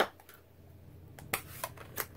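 Plastic stamp ink pad being handled and its hinged lid closed. There is a sharp click at the start, then a few lighter clicks and taps in the second half.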